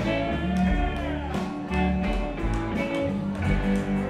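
Live rock band playing with electric guitars, bass guitar and a drum kit, a held note bending up and back down in the first second or so.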